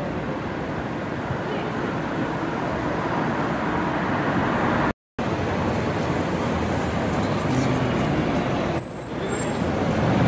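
Steady city street traffic: cars and a bus passing, with a moment of complete silence about halfway through and a few faint high squeals near the end.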